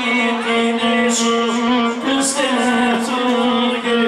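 Live Bosnian folk song: violin playing a melody with held notes and slides over keyboard accompaniment, with a male voice singing.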